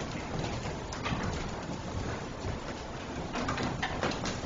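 Footsteps and shuffling of several people moving about on a wooden floor. Scattered soft knocks and rustles come in a pair about a second in and a cluster near the end.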